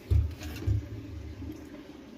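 Two muffled low thumps with a low rumble between them, the sound of handling noise as the camera is moved.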